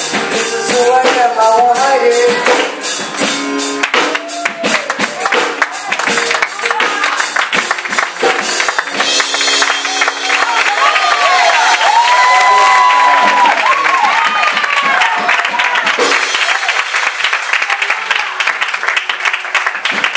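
Live church music: acoustic guitar with rhythmic percussion and a girl singing into a microphone. About halfway through, the congregation applauds and cheers.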